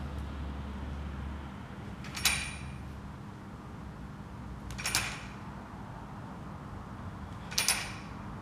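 Metal weight plates clinking on a barbell during bench press reps: three short, bright clinks about two and a half seconds apart, each ringing briefly.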